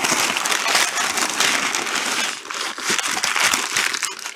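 Brown packing paper crumpling and crackling continuously as hands dig through it in a cardboard box.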